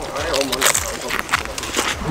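Close crunching of thin, crisp pane carasau flatbread being bitten and chewed in a rapid series of sharp cracks.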